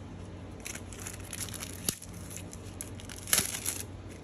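Trading card pack wrapper crinkling and tearing as the pack is opened, in irregular rustles with a sharp click about two seconds in and the loudest rustle a little after three seconds.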